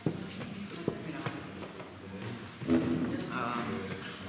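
Wooden chess pieces knocked down on boards and a chess clock being pressed during fast bughouse play: a few sharp clacks, the loudest nearly three seconds in.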